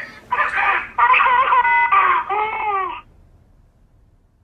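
A high-pitched squealing voice in several wavering bursts, which stops about three seconds in.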